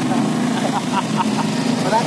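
Steady engine drone and road noise heard from inside a moving passenger vehicle, with a low, even hum under a loud rushing noise.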